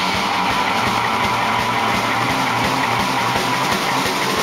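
Rock band playing live, loud and steady, with the amplified electric guitar to the fore and no singing.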